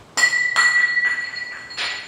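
Something dropped hard onto the floor, very loud: a sharp crash, a second hit about half a second later, then a steady high ringing that dies away over about two seconds.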